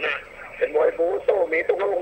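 A man speaking in Thai: live fight commentary over a television broadcast.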